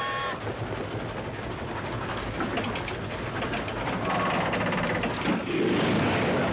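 A steam train whistle sounding a chord of several steady notes cuts off just after the start. Then a steam train running at speed with a dense rumble and patches of rhythmic clatter, louder toward the end.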